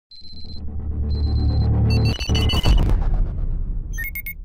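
Synthesized logo-intro sound design: a deep rumble swells under two high electronic beeps, then a quick flurry of digital blips comes about two seconds in before the rumble eases off.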